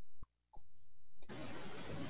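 Video-call audio drops out briefly, two clicks sound, and then a steady rough rushing noise with low rumble comes in about a second in: an unmuted participant's microphone feed carrying noise but no voice, which the host takes for the wrong microphone being selected.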